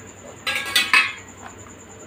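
A short clatter of metal cookware with a metallic ring, starting about half a second in and lasting about half a second, over the pan on the stove where thick kheer is being stirred.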